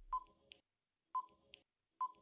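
Countdown timer sound effect: two short, quiet electronic ticks a second apart, each followed by a fainter click, marking the seconds before the answer is revealed.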